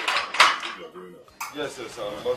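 Metal clanking and rattling of a barred iron gate being handled, in a few sharp strokes: at the start, about half a second in, and again near the middle.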